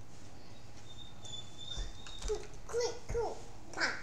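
A thin, faint high whistle for about a second, then four short high-pitched vocal sounds in the second half, each sliding down in pitch, the last the loudest.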